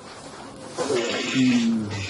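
A person's short breathy vocal sound, not words, starting a little before halfway, with a brief low voiced note near the end.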